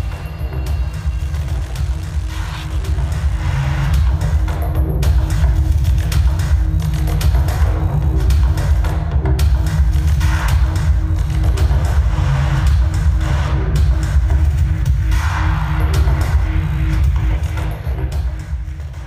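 Music with a heavy bass and a steady held tone, growing louder over the first few seconds. It is the music whose beat drives the live generative visuals.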